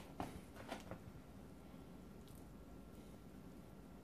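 Faint, soft squishing scrapes of a spatula spreading thick cream-cheese and turnip-green filling over a raw salmon fillet, a few strokes in the first second, then near-silent room tone.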